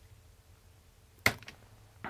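Room quiet broken, about a second and a quarter in, by one sharp click at the computer as a value is entered in the design software, with a faint second tick just after.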